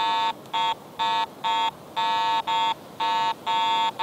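Garrett AT Pro International metal detector giving its low iron tone in Standard mode as the coil sweeps over an iron square nail: about nine short beeps of one steady pitch, two or three a second. The low tone marks the target as iron.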